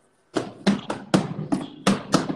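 A quick, irregular series of sharp taps, about four a second, starting a third of a second in.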